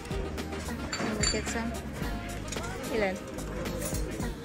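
Metal serving tongs and dishes clinking at a buffet counter, with one ringing clink about a second in, over background music and voices.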